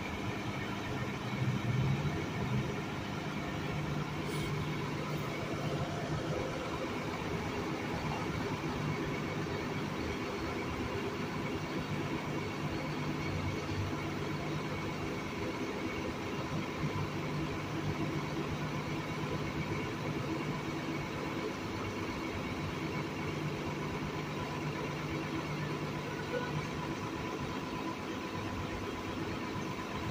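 Steady city street noise: a constant vehicle engine hum with passing traffic.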